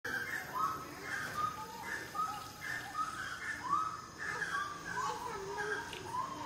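A group of monkeys calling: many short, high calls that rise and fall, overlapping and following one another without a break.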